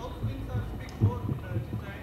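A few dull, low thumps, irregularly spaced, with the loudest about a second in, over faint voices in the room.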